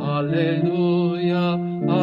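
A gospel acclamation being chanted in church: a sung vocal line that wavers and moves over held accompanying chords.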